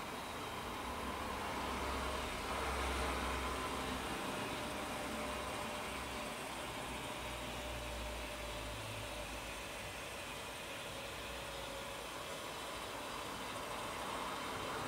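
Electric motor of a motorised TV wall bracket running with a steady mechanical hum as it swings the TV out from the wall.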